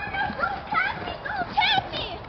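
Children's high-pitched shouts and squeals with no clear words, in short repeated calls, along with a few faint thumps.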